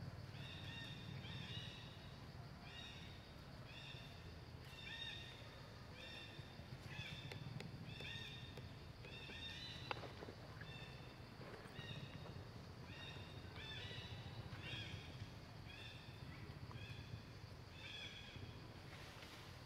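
A bird calling over and over in short high notes, about two a second, over a steady low hum, with one sharp click about ten seconds in.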